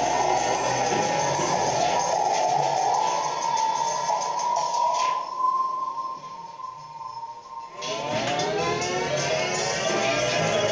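Live experimental improvisation on instruments and electronics. A dense, grainy texture thins about five seconds in to a single steady high tone. About eight seconds in, a spread of gliding tones comes in and settles.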